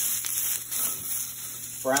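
Sliced yellow squash and zucchini sizzling steadily in hot olive oil in a stainless steel sauté pan, browning as they cook.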